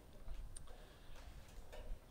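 Faint background sound: a low rumble with a few soft, scattered clicks.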